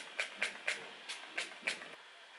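A pump-mist bottle of makeup setting spray spritzing onto a face: about six quick, short hisses in a row, each a fraction of a second apart.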